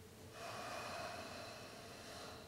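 A person's long breath through the nose, starting about a third of a second in and lasting about two seconds.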